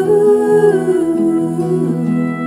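A woman's voice humming a wordless melody over accompaniment of steady sustained notes. It holds a note that steps down and then slides away near the end.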